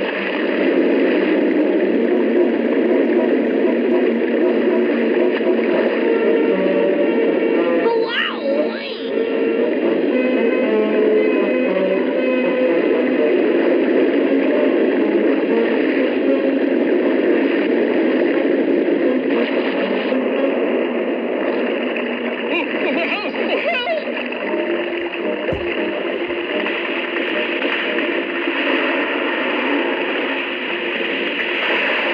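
Cartoon soundtrack music over rushing, splashing water, with two brief sweeping glides in pitch. It is heard played back through a small speaker, dull and band-limited.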